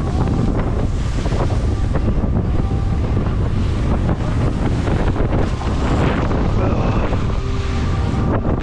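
Loud, steady wind buffeting the microphone on the bow of a speeding motorboat, mixed with the rush and splash of choppy sea around the hull.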